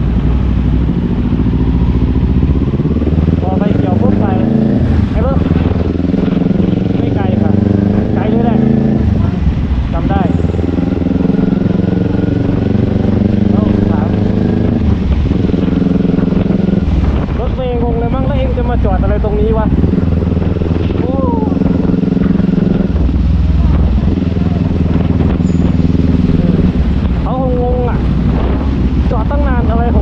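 Kawasaki Ninja 400 parallel-twin engine running while the bike rides through traffic, its pitch stepping up and down repeatedly as the rider accelerates and shifts gears.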